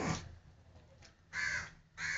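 Two short, harsh bird calls: one right at the start and one about a second and a half in.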